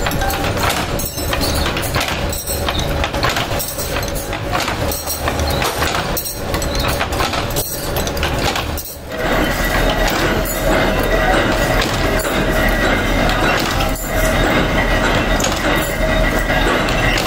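Mechanical power press stamping steel spoons, knocking on each stroke about every 1.3 seconds, with metal spoons clinking. About nine seconds in, the knocks give way to a steadier machine hum with a held whine and only occasional knocks.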